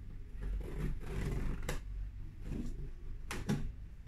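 Scissors cutting the packing tape on a cardboard box, with cardboard rustling and several sharp clicks, two close together near the end.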